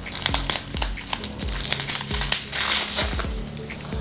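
Plastic bubble wrap crinkling and crackling in quick, irregular bursts as it is worked off a small cardboard toy box, over faint background music.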